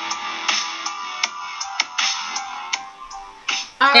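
Instrumental background music with a steady beat; a woman's voice starts at the very end.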